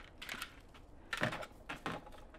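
A few light knocks and clicks from skis and ski poles being handled, the two clearest in the second half.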